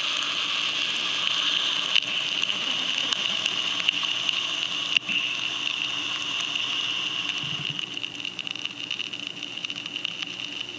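Amplified wooden match burning on a piezo disc, a steady hiss with scattered crackles and clicks, fading slowly over the last few seconds as the flame dies down.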